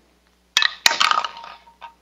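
A business card flicked off the mouth of a plastic bottle with a sharp snap, and a copper-jacketed bullet dropping into the bottle with a clink about a third of a second later, rattling briefly as it settles.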